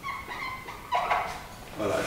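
Whiteboard marker squeaking and scratching across the board in short strokes as equations are written, once near the start and again about a second in.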